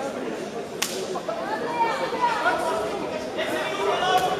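Indistinct voices and chatter echoing in a large sports hall, with one sharp slap about a second in.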